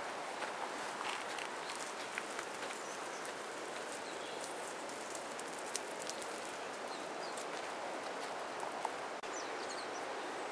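Light rustling and scattered crackles of dry grass and leaf litter being disturbed, over a steady outdoor hiss.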